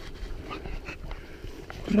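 English setter panting after retrieving a woodcock.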